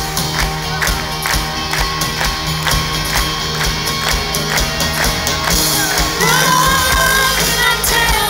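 Live rock band playing at full volume: drums keep a steady beat under electric and acoustic guitars, bass and keyboard. A woman's voice comes in singing about two-thirds of the way through.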